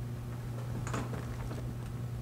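Steady low hum in a small enclosed room, with a brief faint rustle and a few light clicks about a second in.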